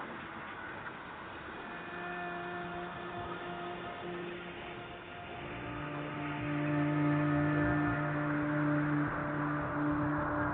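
Ambient solo electric guitar music fading in: long, held droning notes that swell, growing louder and fuller from about halfway through.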